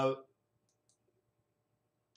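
A few faint clicks of a computer mouse, a little under a second in, as the search box is clicked into.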